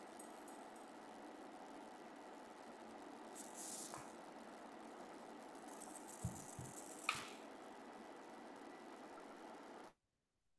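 Faint steady hiss of open microphones on a video call, with a few soft rustles and clicks in the middle; the sound cuts off abruptly at the very end.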